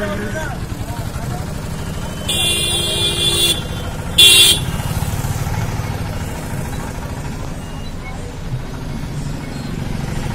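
Road traffic running past, with a vehicle horn honking twice: a held blast about two seconds in lasting about a second, then a shorter, louder one about four seconds in.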